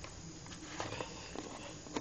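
Faint handling noises of objects being moved about: a few light clicks and knocks, with a sharper knock at the very end.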